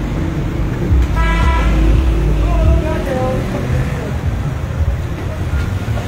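Street traffic close by: a vehicle engine runs with a low rumble, loudest in the first few seconds. A horn sounds once for about a second, starting about a second in.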